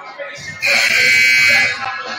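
Gymnasium scoreboard horn sounding once, a steady electric buzz about a second long, while both teams are huddled in a timeout. Crowd chatter carries on underneath.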